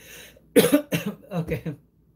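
A man coughs once, a short sharp burst, then says a brief word; the sound stops just before the end.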